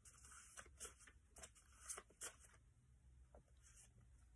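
Faint rustling and soft taps of cards being handled, a few small clicks in the first couple of seconds, otherwise near silence.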